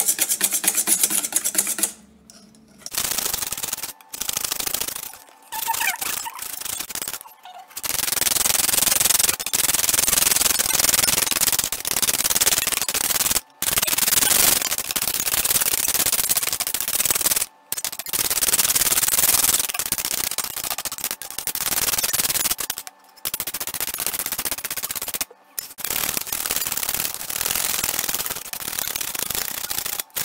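Wire balloon whisk beating thick whipping cream in a stainless steel bowl: fast, continuous scraping and ticking of the wires against the metal, broken by short pauses every few seconds. The cream is whipped past thick and turning yellowish, the stage just before it splits into butter and buttermilk.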